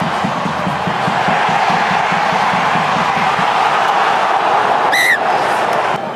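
Rugby stadium crowd, a steady din of many voices, with one short referee's whistle blast about five seconds in.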